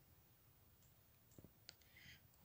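Near silence: room tone, with a few faint clicks about a second and a half in.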